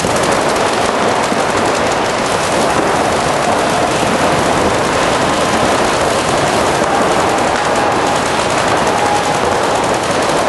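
Several paintball markers firing fast and continuously, the shots running together into a dense rattle in a large hall.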